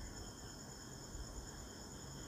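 Faint steady high-pitched background tones over a low hiss, with no other event.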